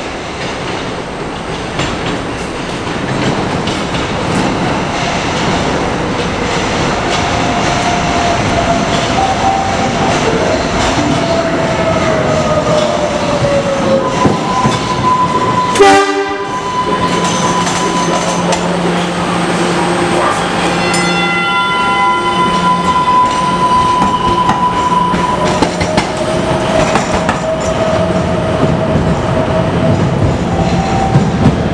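MBTA Green Line light rail train running through a subway station, its steel wheels squealing with a high tone that slides slowly downward as it approaches. About halfway through there is a brief, very loud blast, after which the train runs alongside the platform with a steady electric motor hum and whine over more wheel squeal.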